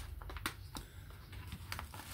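A few faint, sharp clicks and scrapes as an X-Acto craft knife cuts into a padded plastic mailer on a cutting mat.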